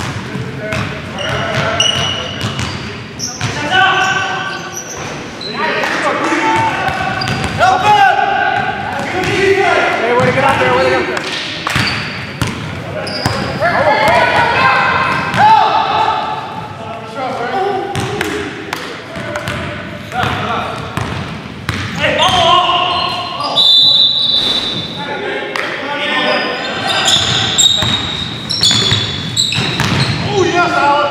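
Basketball bouncing on a hardwood gym floor during play, with players' voices calling out throughout, echoing in a large gym.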